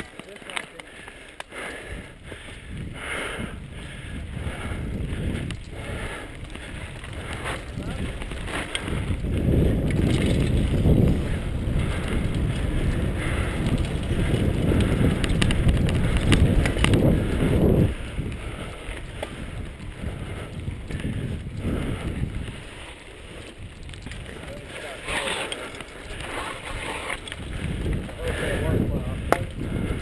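Mountain bike ride on a dirt trail heard from the rider's camera: tyres rolling and the bike rattling over the ground, with wind rushing on the microphone. The rumble grows louder through the middle as the bike picks up speed, then eases off.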